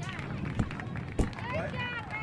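Indistinct background voices and chatter, with two sharp knocks, a little over half a second in and again about a second later.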